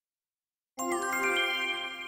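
A short chime jingle after a moment of silence: about a second in, several bell-like notes enter one after another in a rising run and ring on together, slowly fading.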